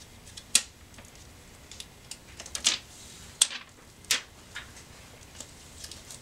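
Protective plastic liner being peeled off a TENS electrode pad: a few sharp, irregularly spaced crackles and rustles of the backing sheet.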